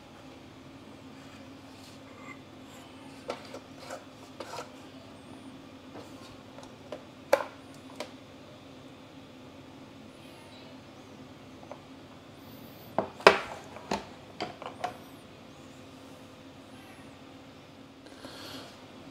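A hard plastic accessory case being handled and turned over: scattered light clicks and taps of the plastic and the metal-shanked bits in it, the loudest cluster about 13 seconds in, over a faint steady hum.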